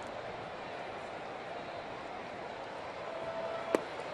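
Steady murmur of a ballpark crowd. Near the end, a single sharp pop as a pitched baseball smacks into the catcher's mitt for a strike.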